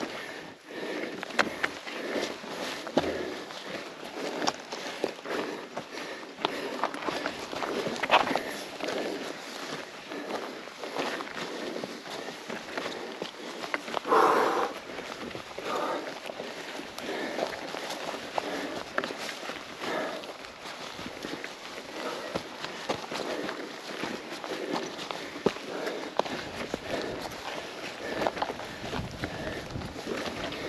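A mountain biker going up a steep, loose rocky trail: uneven crunching steps and tyre noise on gravel and rock, with scattered clicks and knocks from the bike and hard breathing. A louder burst of sound comes about halfway through.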